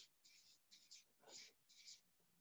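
Felt-tip marker writing on a flip-chart pad: about five short, faint strokes of the marker tip across the paper.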